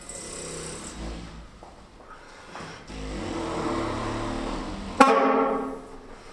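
Saxophone played in a free, experimental way: soft breathy air sounds and low held tones that swell, then a sudden loud note about five seconds in that dies away within a second.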